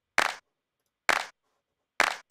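Two short, dry sampled handclap hits about a second apart, with no kick or other drums under them, and a third starting right at the end.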